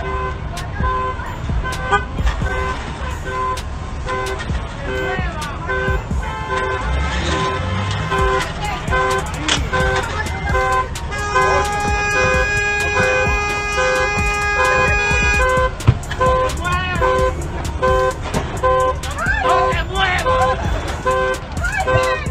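Car horn sounding in short pulses at an even rhythm, the pattern of a car alarm, with one long continuous horn blast in the middle. People's voices are heard under it.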